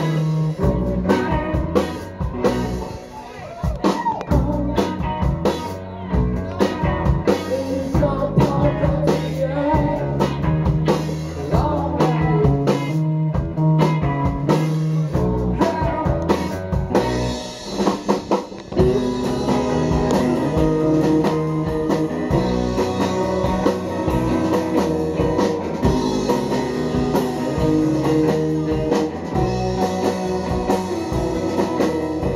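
Live rock band playing: electric guitars, electric bass and drum kit, with a man singing. There is a short break just past the middle, and the band comes back in fuller.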